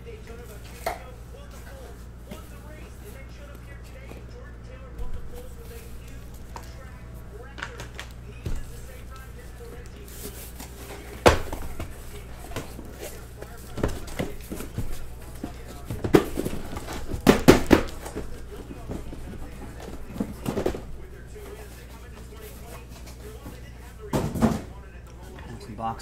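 A cardboard shipping case being opened and handled, with scattered knocks and scrapes of cardboard and of the hobby boxes inside it. The sounds come mostly in the second half, the sharpest knocks about halfway through and near the end, over a steady low hum.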